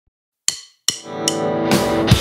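Background music starting up: a half-second of silence, two sharp percussive hits with ringing tails, a lighter hit, then a held chord swelling as a drum beat comes in near the end.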